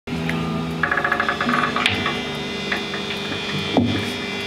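Electric guitar played loosely through an amplifier over a steady amp hum, with a quick run of rapidly repeated notes about a second in. A click about halfway through and a thump near the end.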